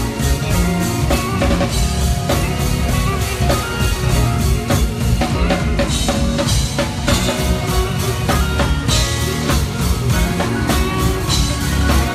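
A live band plays a lead electric guitar over a full drum kit and keyboard, with steady, busy drumming throughout.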